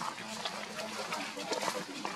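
Faint voices talking in the background over outdoor ambience, with scattered short clicks and rustles.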